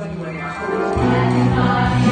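A musical-theatre cast singing together as an ensemble with keyboard accompaniment; the music swells louder and fuller about a second in.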